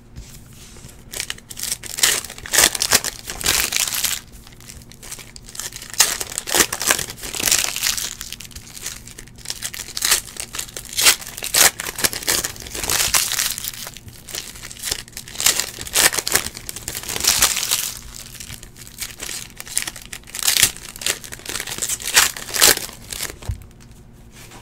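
Foil wrappers of 2017-18 Optic basketball card packs being torn open and crinkled by hand, in many irregular bursts.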